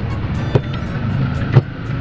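Two sharp plastic knocks, about half a second and a second and a half in, as a blender's blade assembly and jar are handled, the second one louder. Under them runs a steady low hum.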